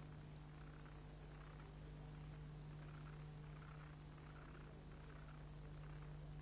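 Near silence: a low, steady electrical hum with faint hiss, and no sound events.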